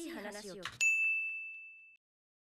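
A single bright, high ding sound effect about a second in, ringing and fading away, the cue that marks the episode being paused.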